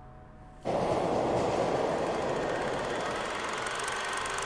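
A Vespa motor scooter's engine running, a dense, steady rattling noise that starts suddenly about half a second in.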